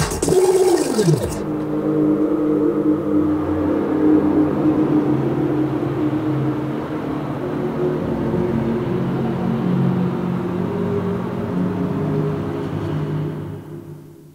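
Music playing back from a cassette tape on a Philips FC931 deck: sustained low tones that change every few seconds, opening with a sound that falls steeply in pitch over about a second. It fades out near the end.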